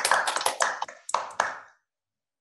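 Applause over an online call: a run of quick, irregular hand claps that dies away near the end.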